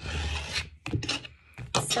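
A deck of tarot cards being shuffled against each other and the table: a dense rasping shuffle for most of the first second, then a few light taps and clicks of the cards.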